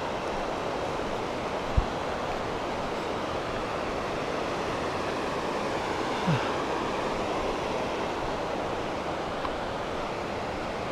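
Steady rush of a distant mountain stream, even and unbroken, with a short low thump about two seconds in and another about six seconds in.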